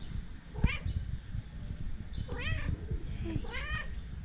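Kitten meowing three times: a short call about half a second in, then two longer meows that rise and fall in pitch near the end.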